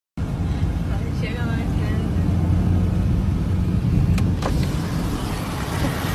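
Motorcycle on the move: a steady low rumble of engine and wind. A short voice-like sound comes about a second in, and two sharp clicks come about four seconds in.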